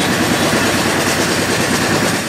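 Loud, steady engine noise and rattling of a small motor vehicle, heard from on board as it drives along a village lane.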